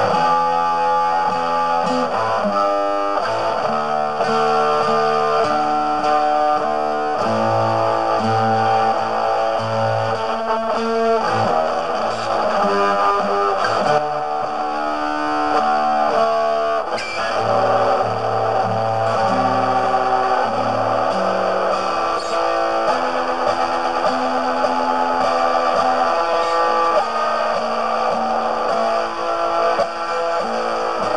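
Instrumental guitar music, played through effects with some distortion, moving through held chords that change every second or two.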